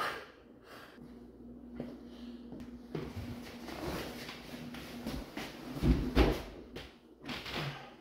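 A heavy fabric couch being pushed through a doorway and dragged across a wooden floor: rubbing and scraping, with dull thumps about six seconds in and again near the end.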